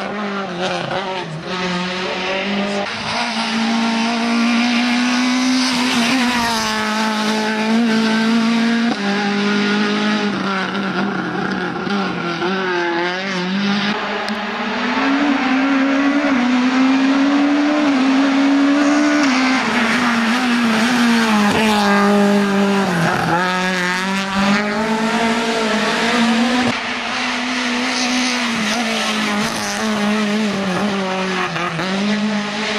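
Peugeot 106 Maxi rally car's four-cylinder engine revving hard up a hill-climb course, its pitch climbing and dropping repeatedly as it accelerates, shifts and comes off the throttle for bends.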